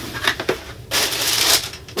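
Tissue paper in a shoebox being pulled open: a few light clicks and rustles, then a loud burst of crinkling for most of a second about halfway through.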